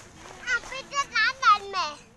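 A child's high-pitched voice crying out in a quick run of about five short calls, the pitch swooping up and down, loudest about a second and a half in.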